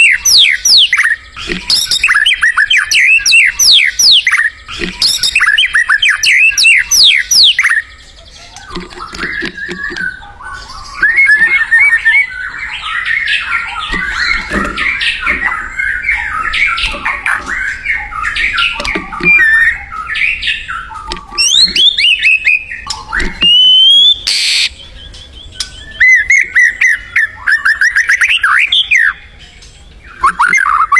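White-rumped shama (murai batu) singing vigorously. It gives repeated phrases of quick, falling whistled notes, then a long run of varied warbling, then whistles again. A brief burst of hiss-like noise comes about three-quarters of the way through.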